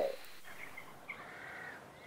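Faint bird calls over quiet open-air ambience, with a few short calls and one drawn-out, arching call near the middle.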